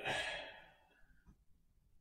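A woman's heavy sigh: a quick breath in, then a long breath out that fades away over about a second.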